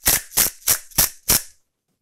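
Pepper mill grinding white peppercorns, a series of short crunching clicks about three a second, cutting off suddenly about a second and a half in.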